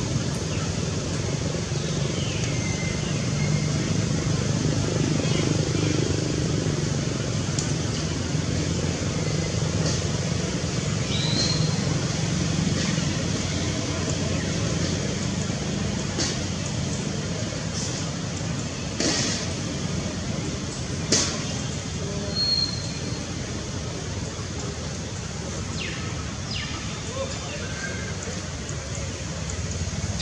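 Steady low outdoor rumble with indistinct distant voices, a few short high chirps, and two sharp clicks about two seconds apart around two-thirds of the way through.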